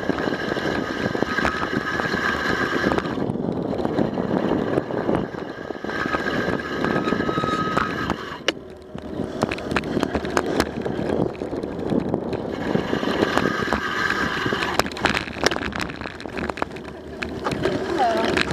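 Wind rushing over a bicycle-mounted camera microphone, with tyre noise from a bicycle rolling on a paved path. A thin high whine comes and goes several times, and a few sharp clicks sound about halfway through and near the end.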